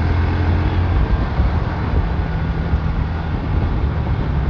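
Bajaj Pulsar NS125's single-cylinder engine running as the motorcycle rides along in traffic, with steady road and wind noise. A deep engine hum is strongest at first and eases off about a second in.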